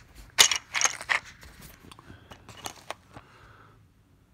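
Clattering handling noise: a quick cluster of loud sharp clicks about half a second in, then scattered lighter clicks that die away, as a clear plastic case of wood carving knives is moved and handled.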